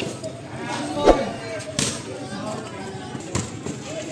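Voices calling out over a pickup basketball game, with a few sharp knocks from the ball hitting the concrete court. The loudest knock comes about a second in.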